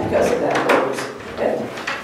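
Speech: a person talking, too indistinct for the recogniser.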